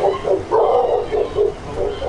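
A dog barking repeatedly in quick bursts.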